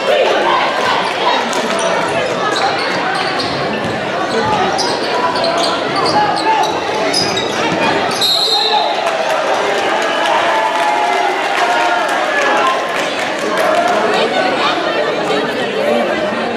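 Basketball game sounds in a school gym: many spectators talking and calling out over the ball being dribbled and sneakers on the court. A short referee's whistle sounds about eight seconds in, as play stops.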